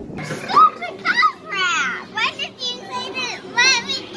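Children's high-pitched voices, shouting and squealing excitedly in quick overlapping bursts.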